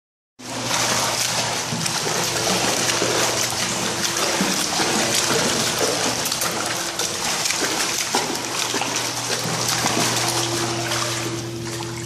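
Continuous rush and splashing of pool water stirred by a dog paddling through it, over a low steady hum.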